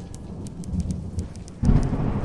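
Rain ambience with a thunder rumble that comes in suddenly, loud and low, about a second and a half in, added as the rain sound effect of a 'rain version' song edit.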